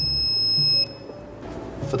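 Single high-pitched electronic beep, about a second long, from the SUMAKE EAA-CTDS torque display's buzzer as the P button is held for three seconds to exit setting mode; it cuts off just under a second in. Background music with low bass notes plays underneath.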